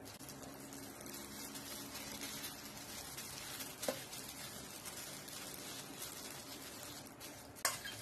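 Plastic-gloved hands spreading and pressing sticky seasoned rice onto a sheet of dried seaweed (gim), giving a steady soft crackle of glove plastic and rice. There is a short click about halfway and a sharper one near the end.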